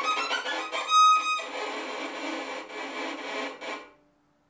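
Violin practising up-bow staccato: a quick run of short, separated notes climbing in pitch, then a loud high note about a second in, followed by more bowed playing that stops just before the end.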